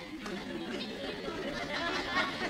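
Studio audience laughing, many voices at once, breaking out suddenly and building slightly.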